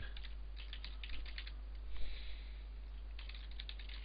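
Typing on a computer keyboard: two quick runs of keystrokes with a pause between them, and a short soft hiss about halfway through.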